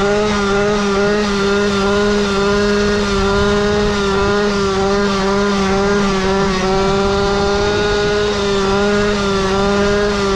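Go-Ped scooter's small two-stroke engine with an expansion-chamber exhaust, held at steady revs while riding, its pitch wavering only slightly.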